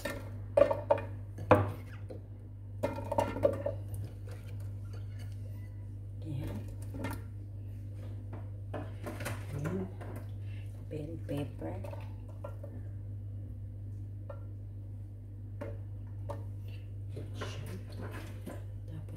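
Raw potato chunks and vegetable pieces dropped by hand into a glass baking dish, knocking and clinking on the glass, with a few loud knocks in the first four seconds and softer ones after. A steady low hum runs underneath.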